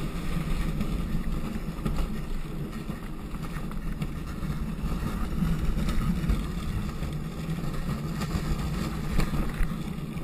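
Gravity luge cart rolling downhill on an asphalt track: a steady low rumble of wheels on the road surface, with a few light knocks as it runs over bumps.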